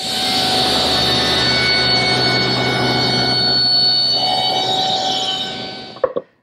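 Table saw with its blade tilted to 45 degrees ripping a bevel cut through stock about two and three-quarter inches thick, a steady loud whine under load that eases off near the end.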